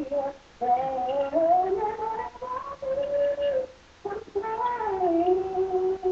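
A woman singing gospel solo and unaccompanied, holding long notes and sliding between them. She breaks briefly for breath about half a second in and again around four seconds in.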